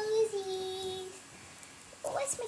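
A child's voice holding one sung, wordless note that sinks slightly in pitch and stops a little over a second in.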